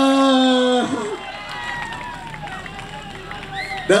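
A man's amplified voice over a PA holds a long, flat, drawn-out "eh" for about a second. Then quieter crowd chatter, with a brief high rising-and-falling call near the end.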